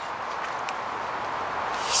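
Steady low background noise with one faint click about two-thirds of a second in; a man's voice starts right at the end.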